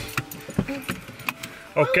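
A car key on its key ring jangling and clinking in a hand, a series of small light clicks.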